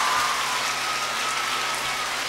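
Audience applauding, slowly dying down.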